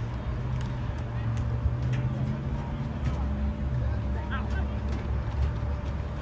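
Outdoor crowd ambience with faint, scattered distant voices over a low rumble. A steady low hum sounds for the first half and fades out a little past halfway.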